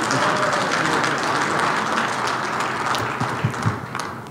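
Audience applauding, dying away near the end.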